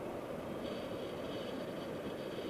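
Steady wind rushing over the camera microphone in paraglider flight.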